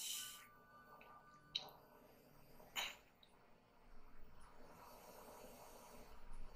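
Near silence, with a breath into a headset microphone at the start and two brief faint breath sounds about one and a half and three seconds in.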